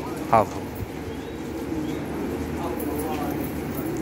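Domestic pigeons cooing in a steady low murmur.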